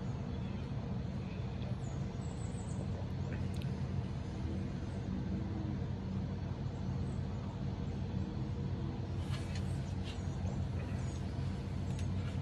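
Steady low background hum of outdoor ambience, with a few faint small sounds now and then.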